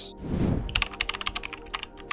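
A typing sound effect: a rapid run of keyboard key clicks, roughly ten a second, starting a little under a second in, as title text is typed out. It plays over steady background music.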